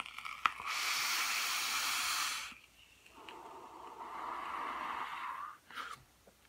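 An e-cigarette draw: a click, then about two seconds of bright, airy hiss as air is pulled through the device, followed by a longer, softer breath as the vapour is exhaled.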